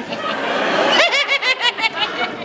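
A hiss in the first second, then a high-pitched, rapid snickering laugh of about eight pulses a second.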